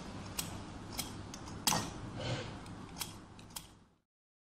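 Scissors snipping paper strips: six or seven sharp, irregularly spaced snips, the loudest a little under two seconds in.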